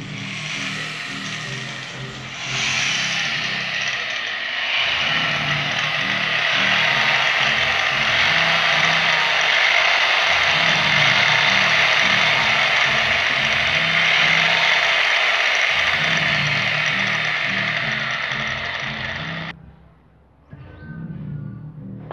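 A loud, steady rushing, whirring noise over background music with a repeating bass line. The noise builds about two seconds in and cuts off suddenly near the end, leaving only the music.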